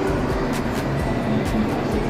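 Music with a light, regular beat of ticks about every half second, playing over the steady background noise of a large, busy hall.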